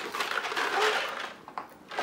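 Crinkling, crackling rustle of plastic being handled as a toy is unwrapped, lasting about a second and a half before it fades.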